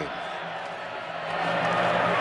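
Football stadium crowd noise, a steady wash of many voices that grows louder about a second and a half in.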